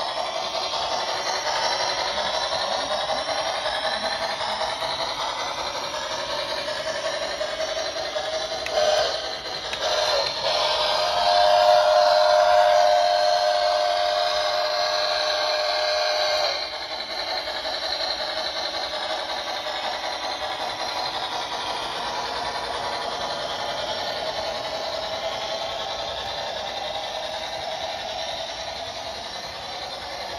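Lionel O-gauge model trains running on three-rail track: a continuous clatter of wheels mixed with the locomotives' electronic sound effects. About eleven seconds in, a steady held tone sounds for roughly five seconds and is the loudest part.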